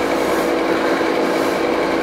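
Circulating pump of a cold-water immersion tank running steadily: a constant hum with a few fixed tones over an even hiss of moving water and motor noise.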